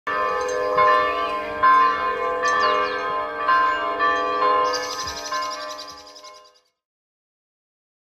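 Bells ringing, struck about once a second, their tones overlapping and dying away, then fading out about six and a half seconds in.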